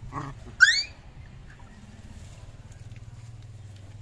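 A puppy gives one short, high-pitched yelp, just after a brief lower sound from the dogs, as the mother dog turns on it while it nurses.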